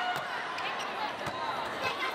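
Volleyball being struck: a serve and then the reception, a few sharp hand-on-ball smacks over steady arena crowd noise.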